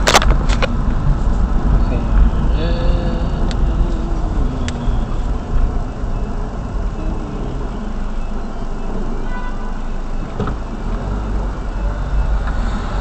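Car driving in city traffic, heard from inside the cabin: a steady low rumble of engine and road noise. A sharp knock comes right at the start, and about three seconds in a brief pitched sound falls in pitch.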